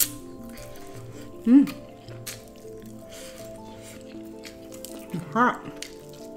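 A person eating a fried chicken drumstick with a crunchy Flamin' Hot Cheetos coating: wet chewing with small mouth clicks, and two short hummed "mmm"s, one about one and a half seconds in and one near the end. Steady background music plays under it.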